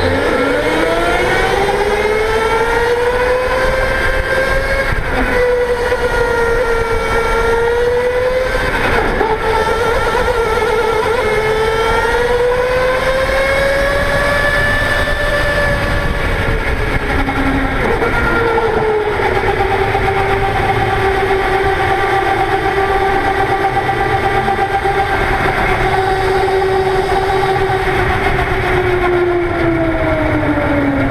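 Go-kart motor heard from onboard, running continuously with a whine whose pitch rises and falls as the kart speeds up down the straights and slows into corners, over steady rumble and road noise.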